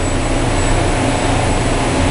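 Large building air-handler blower and mechanical-room machinery running: a loud, steady rushing noise over a low hum.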